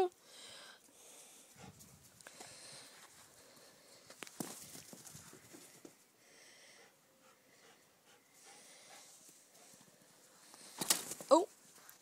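A dog snuffling and breathing faintly as it noses a ball across a lawn, in otherwise quiet surroundings. Near the end comes a loud sudden sound and a short exclaimed "Oh".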